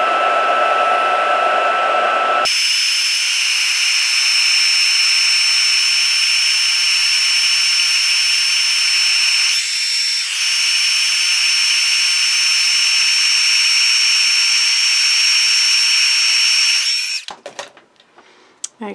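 Craft heat gun running, blowing hot air with a steady high whine over the rush of air, heat-setting expanding puff medium. About two and a half seconds in its sound changes abruptly and the whine jumps higher; it is switched off shortly before the end.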